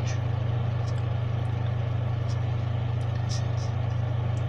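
A steady low hum with a few faint, brief clicks over it.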